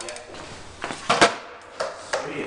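Small kick scooter clattering on a concrete floor during a trick attempt: three sharp knocks, the loudest just past a second in.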